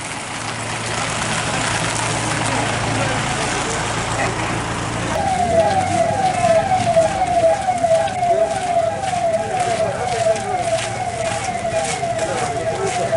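Police vehicle running along with steady engine and road noise; about five seconds in its siren starts, a rapid repeating wail that slides down in pitch a little over twice a second.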